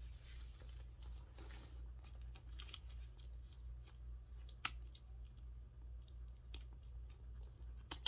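Faint handling of a leather handbag: soft rustles and small scattered clicks, with one sharper click a little past halfway, over a steady low hum.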